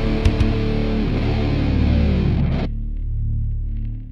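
Loud distorted electric guitar rock music. About a second in the pitch swoops and bends. It then breaks off suddenly to a quieter low held note that fades out at the end.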